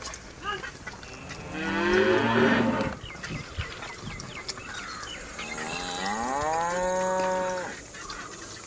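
Cattle in a herd mooing: two long moos, the first the loudest, the second rising in pitch and then held steady for about two seconds.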